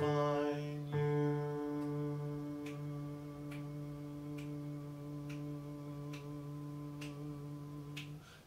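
A man's voice singing the end of a choir bass line with keyboard, settling about a second in onto one long held low note that lasts about seven seconds and slowly fades. Soft ticks come about once a second under the held note.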